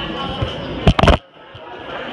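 Handling noise on a phone's microphone: a few loud knocks about a second in, after which the background hubbub of a crowded hall cuts out suddenly, muffled, before slowly coming back.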